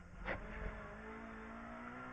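Opel Adam R2 rally car's four-cylinder engine heard faintly in the cabin, holding a fairly steady note in second gear through a tight hairpin, with one brief noise about a third of a second in.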